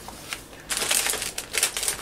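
Paper rustling as a folded sheet is handled, opened out and smoothed flat, starting about two-thirds of a second in.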